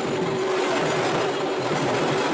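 A steady engine-like hum and rumble over a dense, even wash of noise, with a faint steady tone in the first half.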